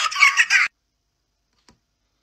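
A young man's loud, high-pitched cackling laughter that cuts off abruptly less than a second in, followed by near silence with one faint click.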